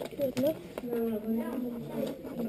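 Speech only: young voices talking in Danish, with a short 'Nå' near the start.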